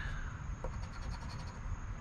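A coin scratching the coating off a paper scratch-off lottery ticket in quick, short, repeated strokes.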